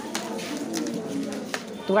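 Indistinct background voices of children in a classroom, with a few light clicks, under no clear speech.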